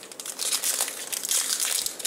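Foil wrapper of a Pokémon TCG booster pack crinkling as it is worked open by hand, a dense run of fine crackles.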